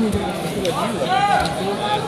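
Voices of spectators and people around the mats talking over one another in a large hall, with one voice calling out more loudly about a second in.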